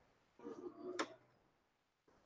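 A single sharp click about a second in, after a moment of faint handling noise.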